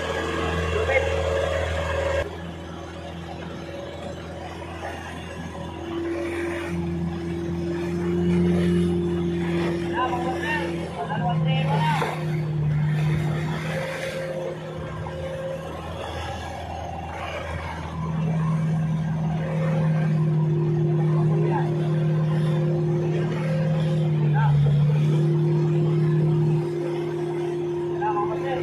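A fishing boat's engine running steadily, a low hum that shifts in pitch and loudness a few times as the speed changes.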